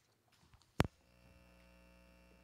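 A sharp pop through the PA system, followed by a steady electrical hum with a buzzy edge that sets in just after it and carries on.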